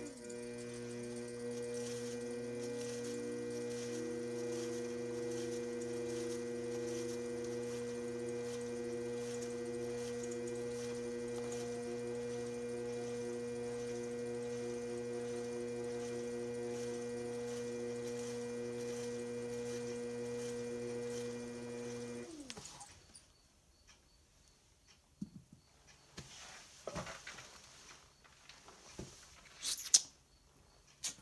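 Electric potter's wheel motor humming as the wheel turns a leather-hard porcelain jar for trimming. The hum rises in pitch over the first few seconds as the wheel speeds up and then holds steady. About 22 seconds in it stops, its pitch falling away, and faint scattered taps and scrapes follow.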